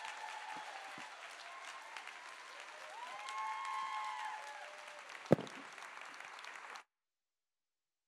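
Audience applauding, with a few cheering voices rising over the clapping. A single sharp thump about five seconds in is the loudest sound, and the sound cuts out abruptly near the end.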